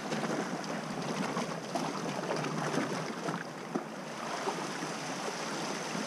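Small sea waves washing and splashing over shoreline rocks, a steady crackling rush of water with foam fizzing in the surf.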